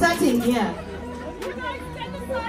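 Women's voices chattering in a small crowd, loudest in the first second and then fainter, with a faint steady tone underneath.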